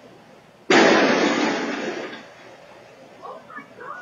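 A sudden loud crash about three-quarters of a second in, dying away over about a second and a half, as a person falls onto a concrete driveway, heard through a security camera's microphone.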